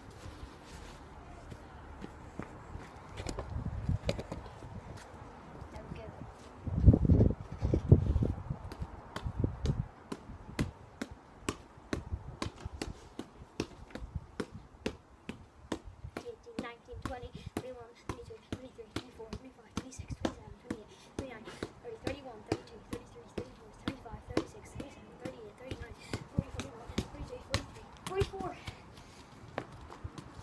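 A football being kicked up repeatedly off school shoes in keepy-uppies, a steady run of short sharp touches about two a second. A few seconds in, loud low rumbling bursts stand out above the touches.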